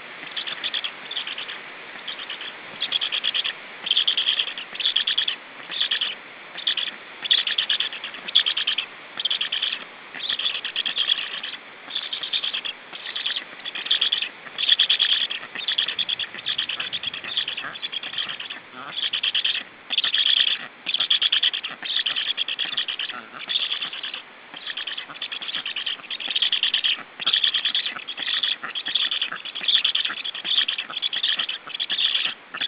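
Black stork nestlings calling on the nest: a long run of short, high, pulsed calls, about two a second.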